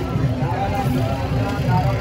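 Voices of several people talking at once at a busy street-market stall, over a steady low background hum.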